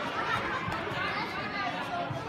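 Hubbub of many overlapping voices, children and adults, chattering in a large sports hall, with no single voice standing out.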